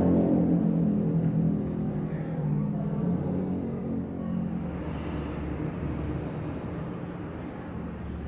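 Low steady rumble and hum of room noise in a hall with a public-address system, slowly growing fainter.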